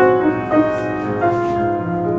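Piano playing a hymn, with sustained chords and a new chord struck about every half second.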